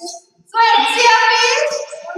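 Children's voices in unison, a drawn-out sing-song class answer, starting about half a second in after a brief lull and fading near the end.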